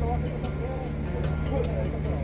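Off-road vehicle engine idling steadily close by, a low even hum, with faint voices and a few light clicks over it.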